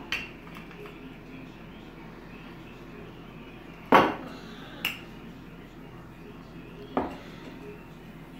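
Wooden rolling pin and plastic play-dough tools knocking on a wooden tabletop: a few sharp, separate knocks, the loudest about four seconds in, with a quiet room between them.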